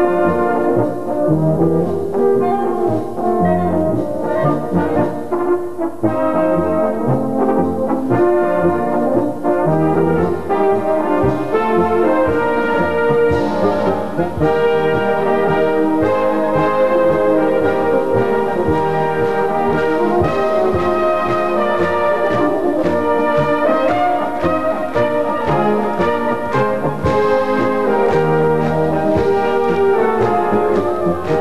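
A large German brass band (Blasorchester) playing a Volksmusik piece, with a row of flugelhorns carrying the melody over the lower brass. It plays loudly and steadily throughout.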